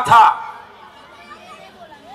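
A man's voice through a microphone ends a word at the very start, then a pause with faint background chatter.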